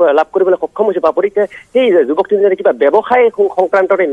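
A correspondent's report phoned in over a telephone line: continuous speech, thin and narrow-band, with the highs and lows cut off.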